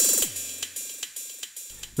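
Elektron Analog Rytm MK2 analog drum machine playing one last drum hit with a bright cymbal-like hiss, its pitched body dropping in pitch and fading out over about a second and a half as the sequencer is stopped.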